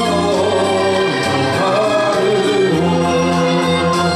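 A man singing a 1960s Japanese pop ballad into a handheld microphone over a recorded backing track with strings.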